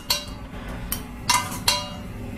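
Steel ladle clinking against a stainless-steel kadai: about four light metallic knocks, each with a brief ringing after it, the last two the loudest.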